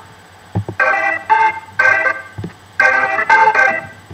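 Rock organ loop from GarageBand's Apple Loops playing: short, detached organ chords in a choppy rhythm with gaps between them, and a few low thumps underneath.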